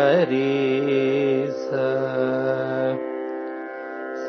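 A man singing the notes of raga Suddha Simantini in Carnatic style: wavering ornamented notes at first, then long held notes, over a steady drone that is left sounding alone near the end.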